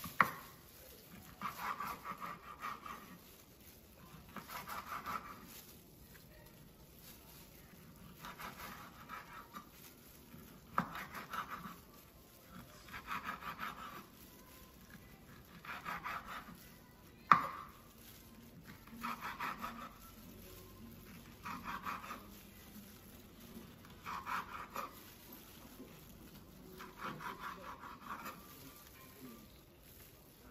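A knife sawing through kielbasa sausage onto a wooden cutting board: short runs of quick slicing strokes every two to three seconds, with two sharp knocks of the blade on the board, one right at the start and one a little past halfway.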